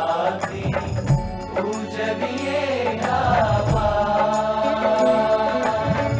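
Devotional song: a voice sings over instrumental accompaniment with a steady beat, holding one long wavering note through the second half.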